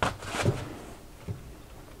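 A single sharp knock as the small cast-iron lathe is set back down on the wooden workbench, followed by softer handling rustles and a faint click a little over a second in.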